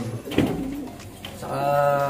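Racing pigeons cooing in a loft, with a sharp click about half a second in.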